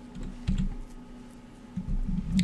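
Soft clicks and low thumps of computer keys being pressed, one about half a second in and another near the end, over a faint steady room background.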